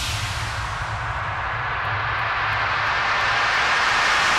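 A beatless breakdown in a bass house track: a white-noise sweep that dips and then rises again over a steady low bass drone, building back toward the beat.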